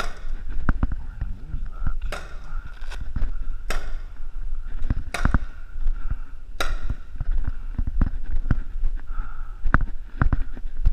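Paintball markers firing scattered single shots, about half a dozen sharp pops at uneven gaps of one to two seconds, each echoing in the hall, over low thuds of movement.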